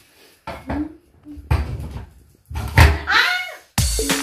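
Irregular knocks and handling noise as an artificial Christmas tree's trunk pole is fitted into its folding metal stand, with a brief voice about three seconds in. Electronic backing music with a beat starts just before the end.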